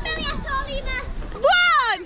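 Children's voices and calls at a busy outdoor water park, then a loud, high-pitched child's shout near the end that rises and falls in pitch.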